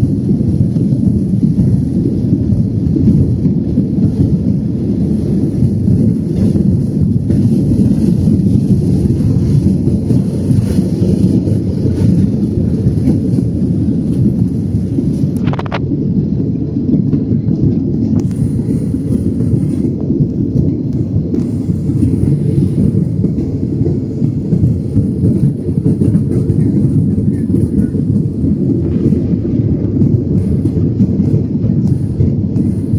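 Jet airliner at takeoff thrust, heard from inside the passenger cabin: a loud, steady low rumble of engines and runway roll through the takeoff run and lift-off into the climb.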